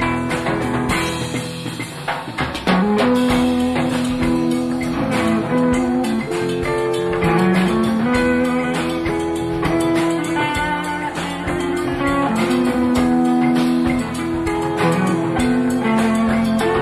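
Live band playing an instrumental break, heard from a soundboard recording: a guitar lead with long held notes, some bent in pitch, over bass and drums.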